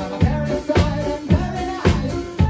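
A live band playing, with a drum kit keeping a steady beat of about two hits a second under electric guitar and keyboard.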